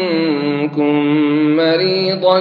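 A man's voice reciting the Quran in melodic tajweed style, holding long drawn-out notes. The pitch steps down early on, the voice breaks briefly a little under a second in, then carries on with a slight rise near the end.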